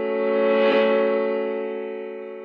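Music: a single sustained chord that starts suddenly, swells a little and then slowly fades away.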